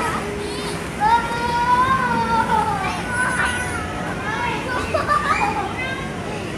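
Young children's voices calling and chattering at play, including a drawn-out high-pitched call about a second in, over steady background noise.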